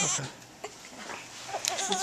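Newborn baby crying: a quieter stretch, then a thin, wavering cry starting about a second and a half in.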